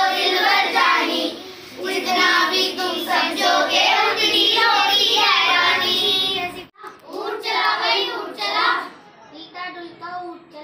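A child singing a song, a continuous melodic line, which cuts off abruptly about two-thirds of the way in and then carries on.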